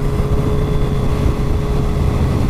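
Motorcycle engine running at steady cruising revs, a constant drone under wind and road rush.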